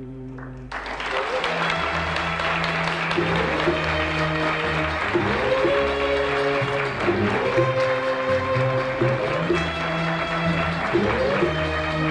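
A live audience applauding, breaking out just under a second in and continuing, over an Arab orchestra playing an instrumental interlude of the song.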